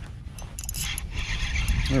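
A Piscifun Honor XT spinning reel cranked to retrieve a hooked fish, with a steady whir and a few light clicks starting about half a second in, over wind rumble on the microphone.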